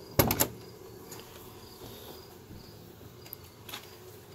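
A car door's latch releasing and the door swinging open: a quick run of sharp clicks and a clunk just after the start, then a couple of faint clicks near the end.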